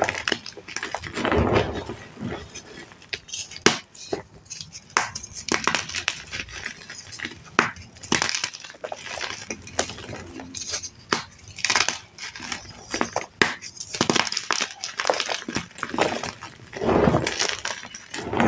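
Hands squeezing and crumbling chunks of dry reformed (paste-formed) gym chalk: an irregular run of crunches and crackles, with a few louder crunches about a second and a half in and near the end.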